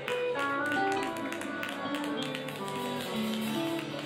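Live band playing with electric guitars, bass and drums, a lead line of quick single notes over the top.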